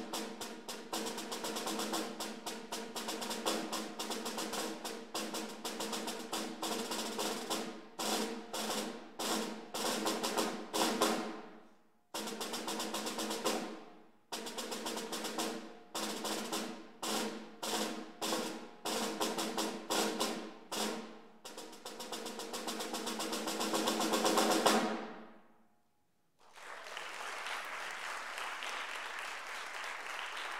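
Solo snare drum played with sticks: fast strokes and rolls broken by short pauses, building to a loud crescendo roll that stops about 25 seconds in. After a moment's silence the audience applauds.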